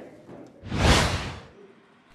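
A whoosh transition sound effect: a single rush of noise that swells and fades over about a second, midway through.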